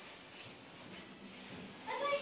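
Quiet room sound, then a child's voice starting near the end.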